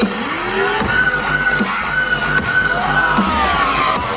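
Loud dubstep from a festival stage sound system: a steady drum beat with synth tones that bend up and down in pitch.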